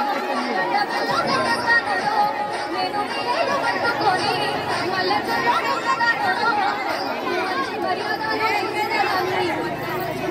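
A large crowd of children chattering, many voices talking over one another at once.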